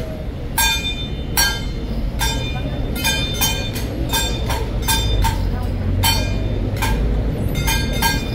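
Metal percussion accompanying a Ba Jia Jiang temple troupe: sharp metallic strikes, each ringing briefly with several overtones, coming irregularly about two a second over a low rumble of crowd and street noise.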